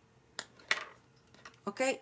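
Two light clicks about a third of a second apart: a crochet hook with a plastic grip being set down on a marble surface.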